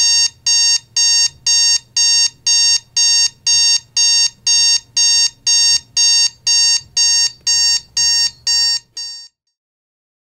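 Digital bedside alarm clock beeping, a high-pitched electronic beep repeating about twice a second; it cuts off about nine seconds in.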